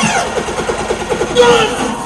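Loud sound-system playback at a sound clash: a falling sweep at the start, then a fast stuttering run of short pulses lasting about a second, and a brief shouted voice near the end.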